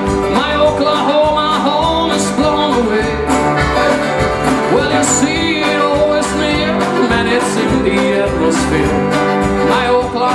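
Live country band playing an instrumental break with a steady beat: strummed guitars, fiddle and accordion together.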